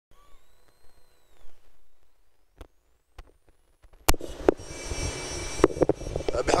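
Faint at first, with a few soft clicks. About four seconds in comes a sharp click, then a steady rush of vehicle and wind noise from a car driving along beside the track.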